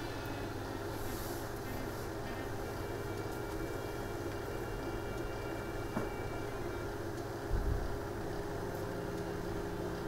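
A steady low hum. A faint click comes about six seconds in, and a soft low thump about a second and a half later.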